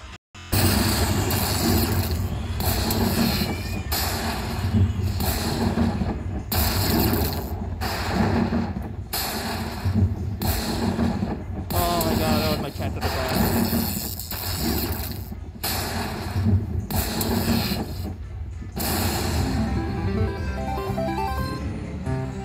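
Aristocrat Dollar Storm slot machine's win-celebration music playing loudly as the win meter counts up. The music comes in with pulsing beats, broken by short pauses about every second and a half.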